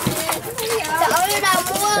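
Excited human voices calling out, with pitch rising and falling, as people exclaim over a large live catfish.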